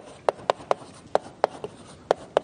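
Chalk writing on a blackboard: a quick, irregular run of sharp chalk taps and strokes, about seven in two seconds, as words are written.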